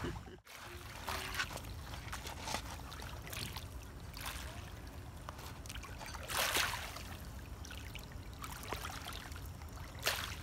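Small waves lapping and trickling at a lake shore, with one louder wash about six and a half seconds in.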